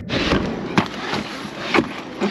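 Footsteps going down wooden steps with a plastic bag rustling, and two sharp knocks about a second apart.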